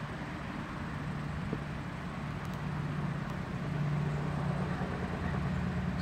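A steady low mechanical hum with a single low pitch, which drops slightly and grows a little louder about halfway through before rising again.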